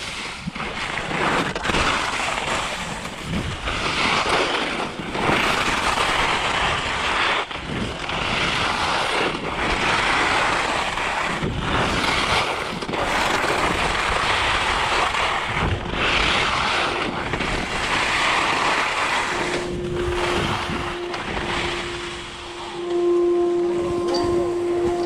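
Alpine skis scraping and carving over chopped, packed snow, the hiss swelling and dropping with each turn about every second or two, with wind buffeting the microphone. Near the end a steady humming tone with a few higher overtones comes in.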